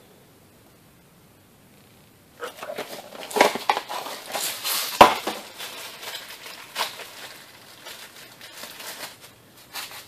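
A new transmission speed sensor being unpacked from its cardboard parts box and wrapping: irregular crinkling and rustling that starts about two seconds in, with one sharp click around the middle.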